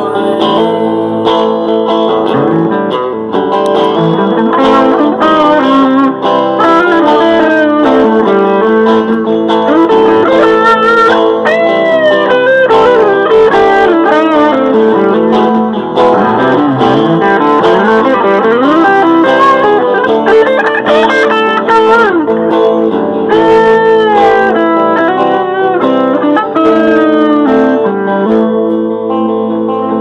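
Live band's instrumental break: a lead guitar solo with bending, sliding notes over steady guitar accompaniment, played loud and continuous.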